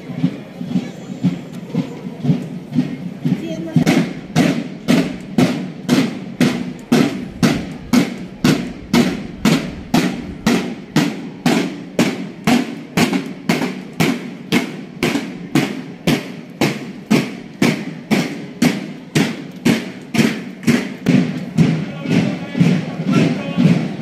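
Marching snare drums of a school band beating a steady march cadence, about two strokes a second, starting about four seconds in.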